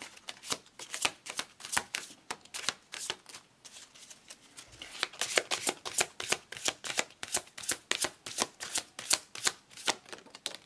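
A deck of oracle cards being shuffled by hand, the cards flicking and slapping against each other in a quick run of several clicks a second. The shuffling eases off for a moment about three seconds in, then picks up again, dense, until near the end.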